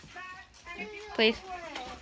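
A young person's voice speaking briefly, with a fainter voice just before it.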